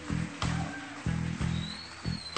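Live rock band music: guitars, bass and keyboards playing an instrumental passage, with chords changing every fraction of a second and a sharp hit about half a second in.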